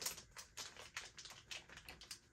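Thin plastic packaging crinkling and crackling as it is handled and pulled open, an irregular run of quick small clicks.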